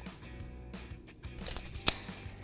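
Quiet background music, with a short rustle ending in one sharp click near the end.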